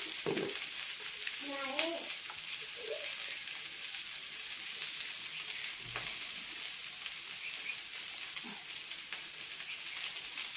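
Chopped okra frying in oil in a steel pan on a gas stove, a steady sizzling hiss throughout, with a couple of faint clicks.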